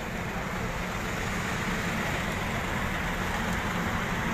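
Steady road-vehicle noise, engine rumble and traffic, growing slightly louder.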